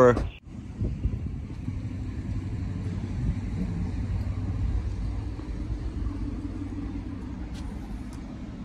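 A car engine running at idle: a steady low rumble that holds at an even level throughout.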